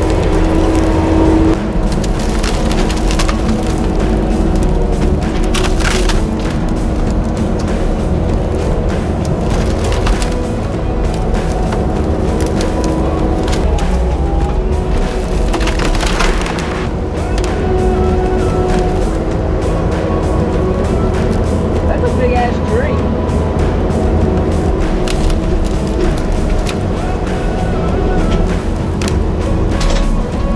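Kubota compact track loader's diesel engine running under load as its grapple pushes through brush and downed trees, with several sharp cracks of wood splintering. Background music plays over it.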